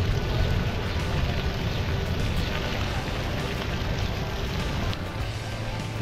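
Plaza splash-pad fountain jets spraying and splashing onto wet stone paving: a steady rush of falling water.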